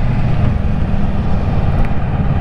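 Kawasaki Versys 650 motorcycle's parallel-twin engine running steadily at low road speed, a low even rumble.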